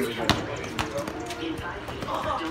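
A thrown football landing with a sharp thump about a third of a second in, followed by a few lighter knocks.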